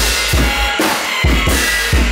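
Drum kit playing a beat of kick drum and snare hits, about two a second, in a noise-pop band track.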